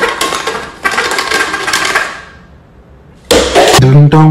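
Plastic knife sawing down through a stack of thin plastic party cups: a dense crackling and clicking for about two seconds that dies away. Near the end a loud pitched, voice-like sound starts.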